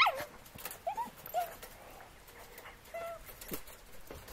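Dogs whining in a few short, high whimpers, worked up by a squirrel shut in a wire cage trap, with a sharp falling yelp right at the start.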